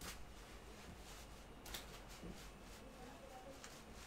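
Near silence: quiet room tone with a steady low hum and a couple of faint clicks.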